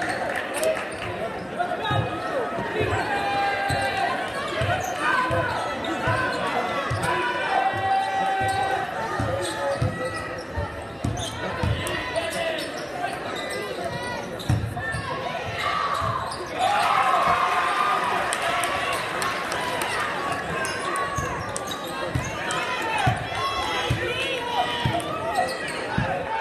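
Basketball dribbling on a hardwood gym floor, with irregular thumps through the play, under steady crowd chatter and shouting in a large gym.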